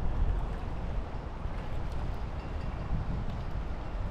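Wind buffeting the microphone: a steady low rumble with an even hiss above it and no distinct events.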